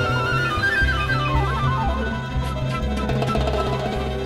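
Charanga ensemble playing a danzonete: flute lead over violins, timbales, congas and bass. The flute holds a wavering high note, then runs quickly down in steps about a second in, over a steady bass and percussion groove.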